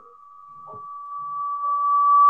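Audio feedback in a video call: one steady whistling tone that grows steadily louder, with faint murmured voices under it.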